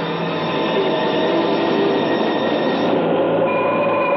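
Science-fiction film sound effect of a spaceship being buffeted: a loud, steady roar with several held whining tones over it, and a new higher tone joining near the end.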